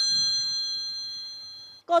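A bell chime ringing out and slowly fading away, several high steady tones sounding together, as the contestants' answers are revealed. A woman's voice starts just at the end.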